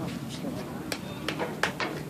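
Background chatter of voices at a ballfield, with a few short, sharp clicks and knocks about a second in.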